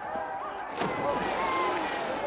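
A crowd shouting, then, a little under a second in, a big splash as two men dive into a water tank, with a rush of splashing water that stays loudest to the end.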